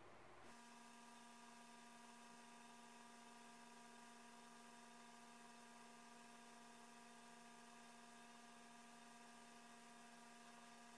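Near silence: a faint, steady electrical hum that sets in about half a second in.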